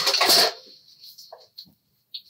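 Cardstock being handled and laid down on the table: a brief papery rustle at the start, then only a few faint light touches.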